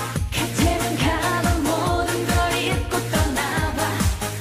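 Upbeat Korean trot song performed live: a woman sings the melody over a dance backing track with a steady, driving drum beat.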